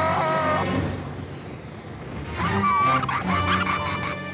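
Cartoon soundtrack music mixed with sound effects. A short bending pitched sound opens it, then a quieter stretch, then a busy run of pitched effects and sharp clicks from about two and a half seconds in.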